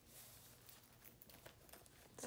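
Near silence, with faint rustles and light clicks of a wallet being handled.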